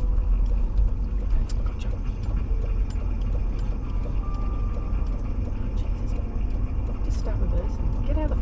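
Steady low rumble of a car rolling slowly across a wet car park, its engine and tyres on wet tarmac, with a few light clicks scattered through. A voice starts near the end.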